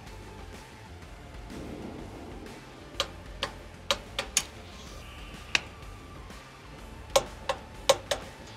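Sharp metallic clicks, about nine of them spaced unevenly over the last five seconds, from a torque wrench and hand tools tightening the N1 speed sensor's mounting bolts on a CFM56-5B engine, over a steady low hum.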